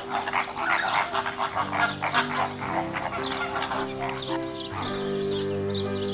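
A flamingo flock calling: many short goose-like honks and chatter overlapping, thick for the first half and thinning out, over background music with slow held notes that carries the end.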